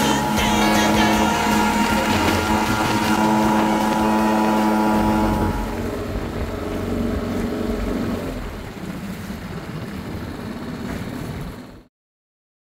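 Small motorboat running under way, its engine with water and wind noise. A held chord of music ends about six seconds in, and everything fades out near the end.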